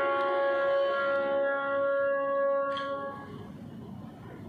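Music: a long held chord of several sustained notes that ends about three seconds in, leaving a faint low rushing noise.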